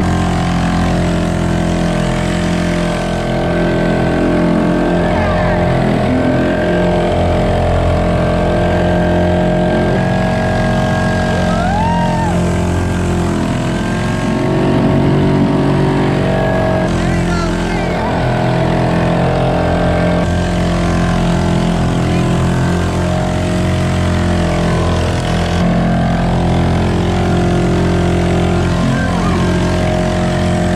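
A Honda four-stroke bumper-boat motor running steadily close by, with the motors of other bumper boats running around it.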